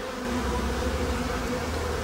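Honeybees buzzing with a steady hum over an open hive as a frame of comb covered in bees is lifted out, with a low rumble underneath.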